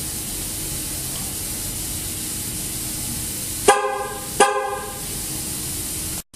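2009 GMC Sierra's horn chirping twice, about three-quarters of a second apart, over a steady hiss. The double chirp confirms that the tire pressure monitoring module has entered learn mode after lock and unlock were pressed together on the key fob.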